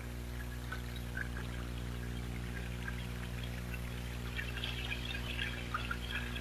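Faint trickling, dripping water, with small droplet ticks growing denser in the second half, over a steady low hum.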